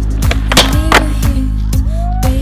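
Background music with a steady beat and a sliding bass line, with two sharp skateboard clacks about half a second and one second in.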